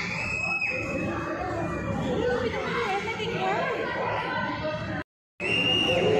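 Indistinct voices and children's chatter in a large indoor hall, broken by a short gap of total silence about five seconds in.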